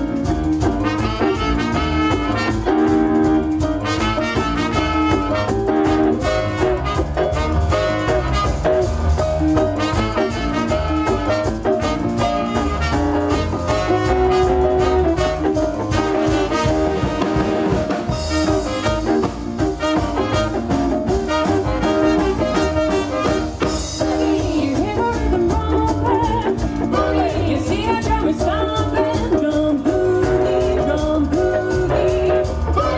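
Live swing band playing an up-tempo boogie number, with trumpet lines over a drum kit and double bass keeping a steady beat.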